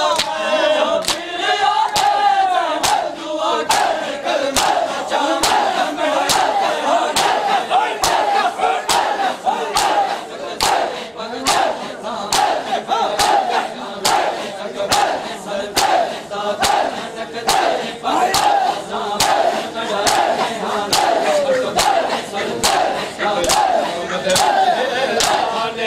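A crowd of mourners chanting a noha together while beating their chests in unison (matam), the sharp slaps landing evenly about every three-quarters of a second.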